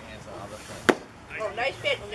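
A pitched baseball meeting leather or bat at home plate with one sharp crack a little under a second in, followed by spectators' high voices calling out.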